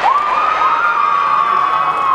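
Gymnastics teammates cheering: several high-pitched voices rise one after another into long, overlapping held shouts that drop away near the end.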